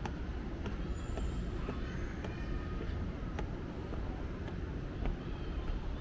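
Steady low rumble of city traffic, with a few faint, irregular ticks of footsteps on stone stairs.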